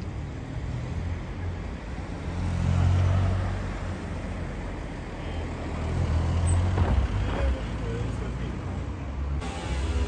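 Low rumble of street traffic, swelling twice as vehicles pass, with faint indistinct voices.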